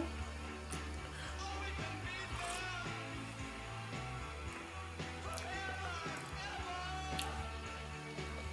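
Quiet background music: a low bass line that changes in steps under a faint, wavering melody.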